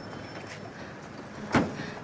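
A Volkswagen Santana sedan's door being shut once with a solid slam about one and a half seconds in, over a steady low street hum.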